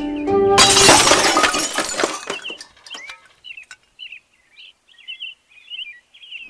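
The music breaks off into a sudden loud shattering crash of many small clattering impacts that fades away over about two seconds. Small birds then chirp in short, repeated calls.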